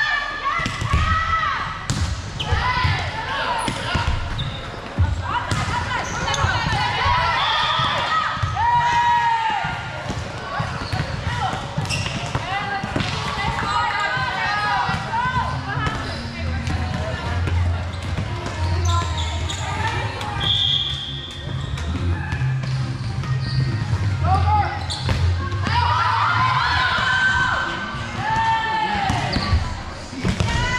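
Indoor volleyball match in a large gym: players' high voices calling and shouting on court, with the sharp thuds of the ball being hit and bouncing. Two brief high steady tones sound about 8 and 21 seconds in.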